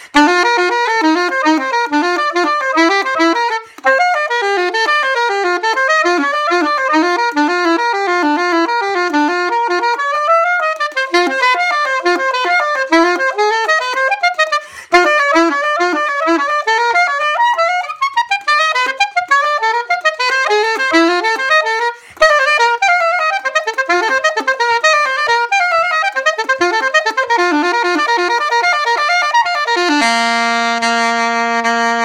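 SOAR Hi-Q curved soprano saxophone played solo in fast running passages of quick notes that climb and fall, with short breaks for breath about four, fifteen and twenty-two seconds in.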